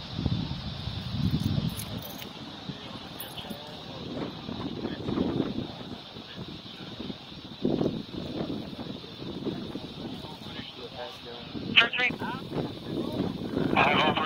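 Indistinct, muffled voices with no clear words. Near the end, a short burst of two-way radio traffic cuts in.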